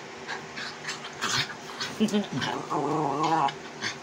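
Small dog play-growling during rough play with a person's hand, a wavering growl coming in the second half after a few short clicks.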